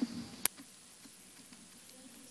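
A loud, steady, very high-pitched electronic whine from the conference sound system. It cuts in suddenly about half a second in, as the next delegate's microphone comes on, and points to a microphone or audio-feed fault.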